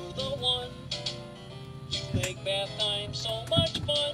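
Electronic Sesame Street pop-up toy playing a short tune through its small speaker after its green button is pressed, with two sharp clicks partway through.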